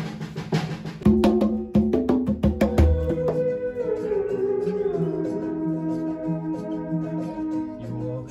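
A drum kit is played for about three seconds, with heavy kick-drum hits. Then a theremin takes over, holding a wavering note and sliding down in pitch over low sustained backing notes.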